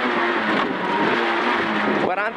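Peugeot 106 N2 rally car's engine running hard on a special stage at a fairly steady pitch, heard from inside the cabin.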